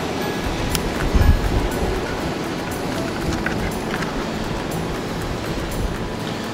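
Surf washing against rocks and wind on the microphone as a steady noise, with a gust about a second in and a few light clicks. Faint background music runs underneath.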